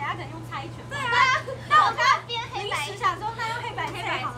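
Several young women's voices overlapping, calling out excitedly and laughing during a hand game to pick teams, loudest in sharp, high-pitched shouts about one and two seconds in.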